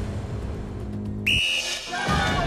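Dramatic background music, then, a little past a second in, one short steady whistle blast signalling the start of a tug-of-war.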